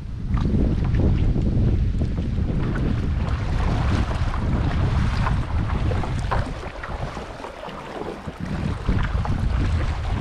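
Wind buffeting an action-camera microphone in a steady low rumble, over water lapping and splashing around a kayak.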